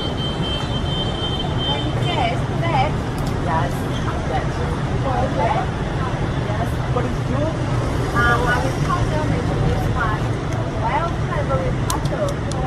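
Steady road-traffic noise, a continuous low rumble, with conversational speech over it.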